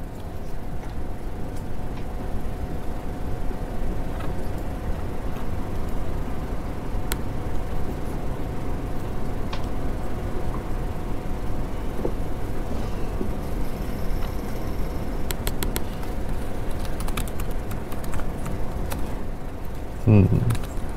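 Steady room noise with a faint constant hum. Near the end comes a quick run of clicks: typing on a laptop keyboard.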